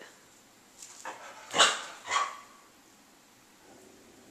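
A dog barking: one sharp bark about one and a half seconds in, then a shorter, weaker one about half a second later.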